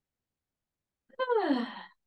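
After a second of silence, a woman lets out one voiced sighing exhale that falls in pitch and lasts under a second: a deep relaxing breath.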